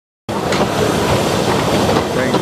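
Open carriages of a small steam-hauled railway rolling along the track, heard from on board: a steady rumble and rattle of wheels and carriage bodies with a few light clicks, starting a quarter second in.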